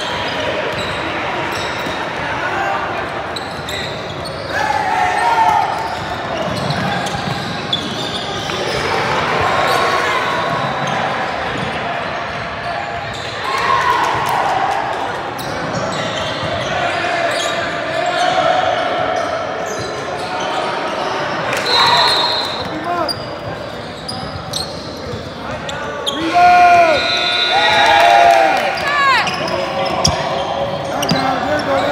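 Youth basketball game in a gym with a hardwood court: the ball bouncing on the floor, players and spectators calling out, all echoing in the hall. Sneakers squeak sharply on the hardwood several times near the end.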